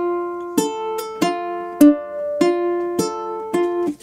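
Acoustic ukulele fingerpicked: a slow, even arpeggio through one held chord, single plucked notes a little under two per second, each left ringing into the next.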